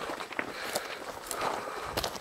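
Footsteps on loose stones and gravel while climbing a steep scree slope: a series of irregular short scrapes and crunches.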